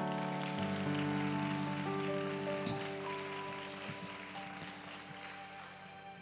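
Soft background music of sustained keyboard chords. The chords change every second or so and slowly fade down.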